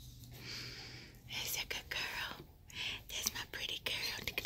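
A person whispering softly in short breathy bursts.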